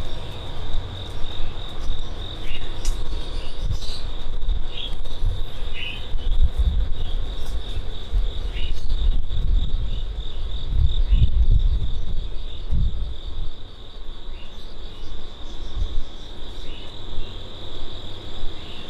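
Insects chirring steadily in a fast, even pulse, with a few short chirps over it. An uneven low rumble comes and goes, strongest around the middle.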